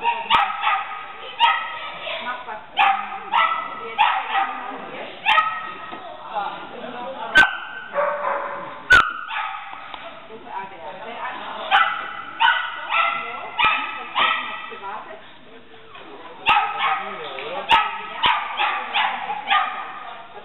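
A Shetland sheepdog barking over and over in quick runs of high-pitched yaps, easing off briefly about three-quarters of the way through. Two sharp knocks about a second and a half apart land near the middle.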